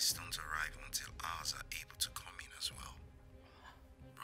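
A woman speaking in a low, hushed voice, with hissing 's' sounds, for the first three seconds, over a steady background music underscore.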